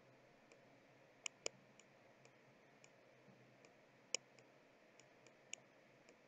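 Faint, irregular light clicks, about a dozen, from a pen input device as a Chinese character is handwritten on screen, over near-silent room tone. The clearest clicks come just past a second in and about four seconds in.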